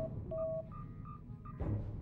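Starship bridge console sounding a string of short electronic beeps, one lower tone then several higher ones, signalling an incoming hail. A low steady ship hum runs underneath and swells about a second and a half in.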